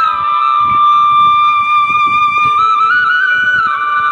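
Background music: a slow melody of long held notes that steps to a new pitch a few times.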